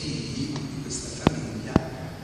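Two sharp knocks about half a second apart, the loudest sounds here, over ongoing speech.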